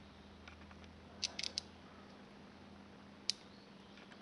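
Small metal clicks from a digital caliper's jaws and a steel feeler gauge blade being handled: a quick cluster of four faint ticks a little after a second in, and one sharper click near the end, over a faint steady hum.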